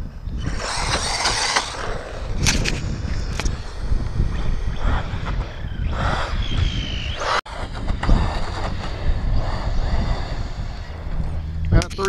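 Wind rumbling on the microphone, with short bursts of hiss and a brief rising whine from a battery-powered RC truck accelerating across asphalt.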